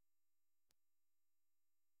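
Near silence between spoken steps, with only a barely audible steady hum.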